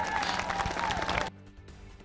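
Rally crowd clapping and cheering, with a held whistle-like tone above the clapping; it cuts off abruptly a little over a second in.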